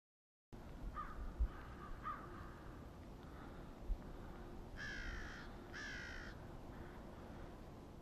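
American crows cawing in the distance: two faint calls, then two louder harsh caws about a second apart in the middle. Two brief low thumps come before them.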